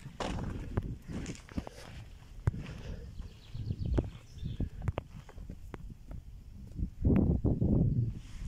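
Footsteps on a sandy path, short sharp scuffs and crunches, over a steady low rumble of wind on the microphone, with a louder stretch of rumble near the end.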